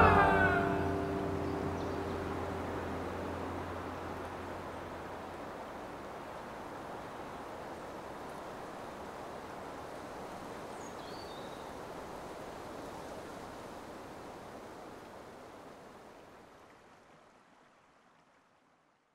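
The last notes of the music die away, leaving a steady rushing of flowing river water. A brief high chirp comes past the middle, and the water sound fades out near the end.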